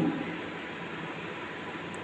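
Steady background hiss with no distinct sound events.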